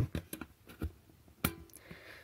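An Eneloop AA cell pushed into the spring-loaded slot of a plastic USB battery charger: a few faint scrapes and small clicks, then one sharper click about one and a half seconds in as the cell seats against the contacts.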